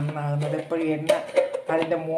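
A person talking, with no other sound standing out above the voice.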